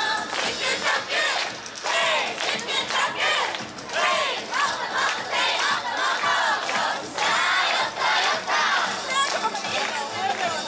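A large group of dancers shouting chant calls together in chorus, many voices at once in a string of short shouted phrases.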